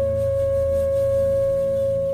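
Bansuri flute holding one long, steady note over a low drone in meditative music.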